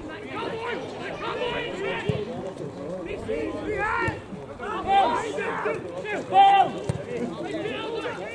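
Men's voices talking and calling out on the touchline of a football match, with loud shouts about four, five and six and a half seconds in. A couple of short thuds come about two seconds in and near the end.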